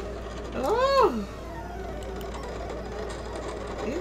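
Silhouette Cameo cutting machine running, its carriage and roller motors whirring steadily as it works through a print-and-cut job. About a second in, a short pitched sound rises and falls, the loudest moment.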